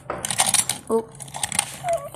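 Quick small clicks and rattles of a die-cast Hot Wheels car and the plastic trailer of a Super Rigs truck being handled, as the car is pushed in through the trailer's drop-down rear ramp.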